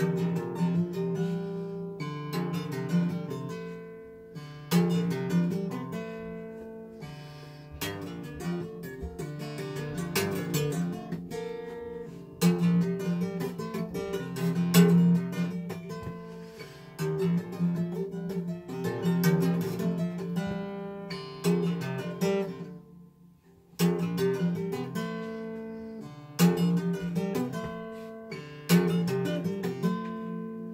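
Instrumental jazz played on acoustic guitar: chords strummed and left to ring out and fade, a new chord every two to three seconds, with a short break in the playing past the two-thirds mark.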